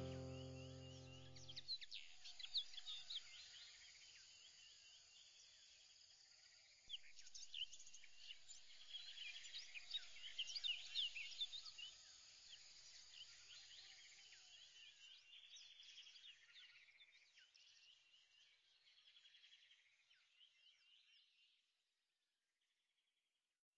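Background music ends in the first two seconds. Then comes faint birdsong: many short chirps from several birds, busiest about seven to twelve seconds in, fading away near the end.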